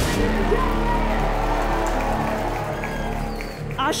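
Band music: the drum beat stops right at the start and a held chord rings on, fading out over about three and a half seconds.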